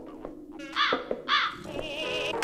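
A crow cawing twice, two short harsh calls about half a second apart.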